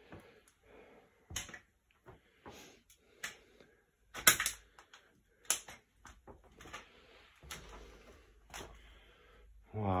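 Scattered knocks, clicks and shuffling steps in a small room, a few seconds apart, with the loudest knock about four seconds in.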